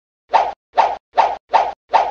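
Five quick cartoon pop sound effects in an even rhythm, a little under half a second apart, one for each vegetable popping onto a fork in an animated title card.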